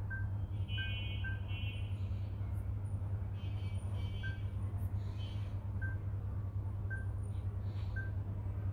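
Steady low background hum, with a few short, faint high beeps scattered through it.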